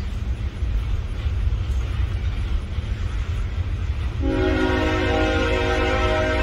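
Freight train locomotive rumbling low as it pulls slowly along the tracks. About four seconds in, its horn starts sounding a steady chord of several tones that holds on.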